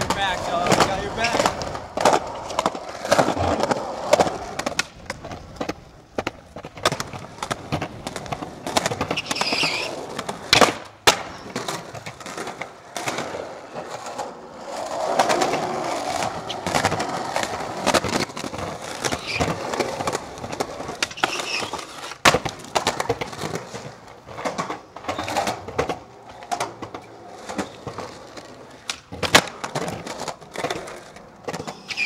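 Skateboards rolling on concrete, with repeated sharp clacks as tails pop and boards land.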